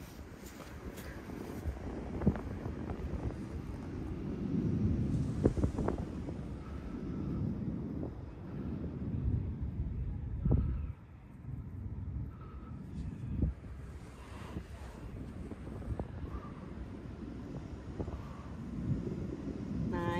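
Wind buffeting the microphone: a low rumble that swells and fades, with a few brief knocks.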